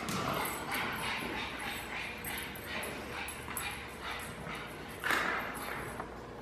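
A pug sniffing and snuffling as it searches for a hidden scent, a run of short noisy breaths a few times a second, with a louder one about five seconds in.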